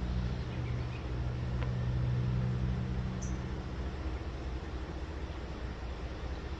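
Diesel-electric freight locomotive engine running as the train approaches at low speed, a steady low drone that eases slightly after about four seconds.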